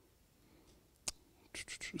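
Near silence, broken by one sharp click about halfway through, then soft, breathy, hissing sounds as a man starts to speak again near the end.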